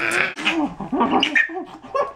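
A baby girl squealing and crying out in delight as she is nuzzled and tickled: one held squeal at the start, then short broken squeals.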